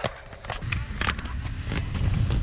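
Inline skate wheels rolling over smooth concrete: a low rumble that builds after the first half-second, with a few sharp clicks and knocks from the wheels and frames.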